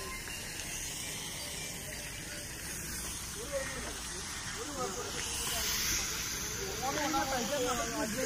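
Steady hissing rush of a bus on fire, burning fiercely, with people's voices joining in from about halfway through and most present near the end.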